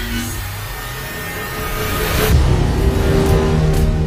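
Film trailer score with car engine sound effects mixed in, building in a noisy swell about halfway through into sustained held notes.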